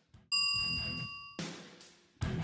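A bright bell-like ding sound effect about a third of a second in, ringing steadily for about a second and then cut off as a guitar strum comes in. Soft background guitar music runs underneath.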